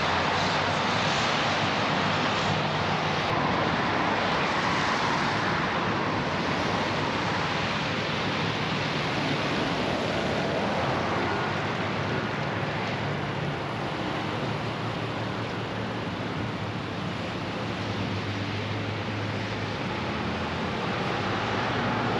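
A steady rushing noise of moving air or road, unchanging all through, with a faint low hum underneath.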